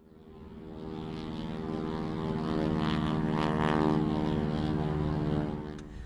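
Airplane flyby sound effect: a steady, buzzing engine drone that fades in, is loudest around the middle, and fades away near the end.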